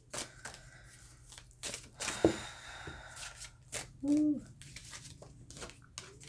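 A tarot deck being shuffled by hand: quick papery snaps and card slides, with a short hummed 'mm' of a voice about four seconds in.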